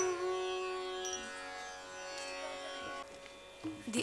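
The final held note of a Carnatic music accompaniment: a string drone with many overtones, slowly fading and dying away about three seconds in.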